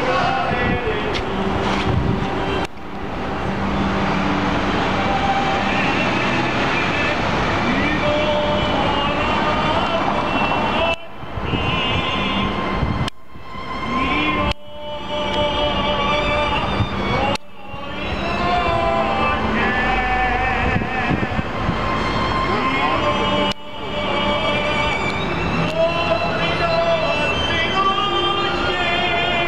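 A man singing opera in the street, his voice held on long notes with a wide vibrato, over city traffic. The sound breaks off abruptly for a moment several times.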